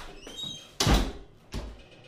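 A door closing: a short hinge squeak, then the door shutting with a loud thud just before a second in, followed by a lighter thump about half a second later.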